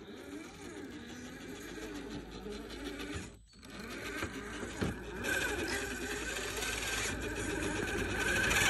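A radio-controlled rock crawler's electric motor and gearbox whining. The pitch rises and falls with the throttle as it crawls over tree roots. The sound drops out briefly a little over three seconds in, then comes back louder and higher-pitched from about five seconds.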